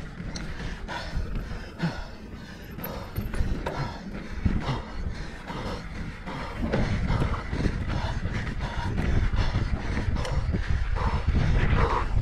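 Downhill mountain bike descending a dry, rocky dirt trail: tyres crunching over loose ground and the bike rattling over bumps, with wind rumbling on the helmet-mounted microphone. It grows louder in the second half as the bike gains speed.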